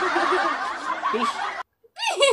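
A person laughing breathily, with a word spoken over it, cutting off suddenly about a second and a half in.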